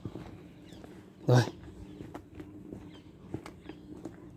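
One short spoken word about a second in. Otherwise faint, irregular light footsteps on brick paving.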